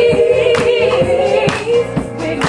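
Voices singing a church song, one holding a long, slightly wavering note, with hand claps on the beat about twice a second.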